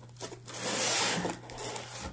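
Close handling noise: a rubbing rustle that swells to its loudest about a second in and fades after about a second, as cards are reached for and pulled from a cardboard card box.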